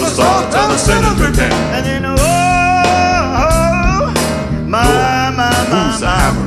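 Male vocal quartet singing a gospel number in close harmony over a band with bass and drums, with one long held note in the middle.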